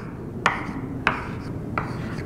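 Chalk on a blackboard while loops and arrows are drawn: three sharp taps as the chalk strikes the board, each followed by a short scraping stroke.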